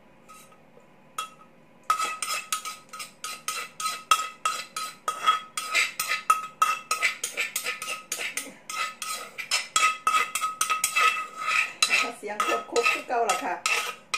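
A metal spoon scraping and knocking against the inside of an unglazed clay mortar as papaya salad is scooped out onto a plate. It makes a rapid run of clinks and scrapes, several a second, with a ringing note, starting about two seconds in after a near-quiet start.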